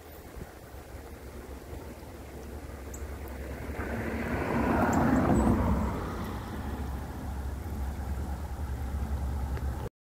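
A car passes by, its noise swelling to a peak about five seconds in and then fading, over a steady low rumble.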